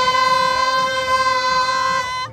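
A woman singing loudly along to silent-disco headphone music, holding one long high note without audible backing.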